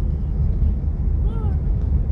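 Steady low rumble of a car driving, its engine and tyre noise heard from inside the cabin.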